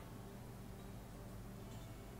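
Quiet room tone: a steady low hum, with one faint click right at the start.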